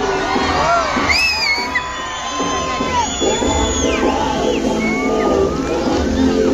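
Music for a musical fountain show playing over loudspeakers, with a crowd cheering and whistling over it in rising and falling glides.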